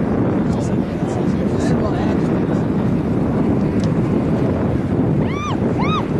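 Wind buffeting the microphone, with distant voices of players and spectators on the field. Near the end, two short high calls that rise and fall in pitch come in quick succession.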